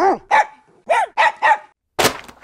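A dog barking: five short, sharp barks in quick succession, each rising and falling in pitch.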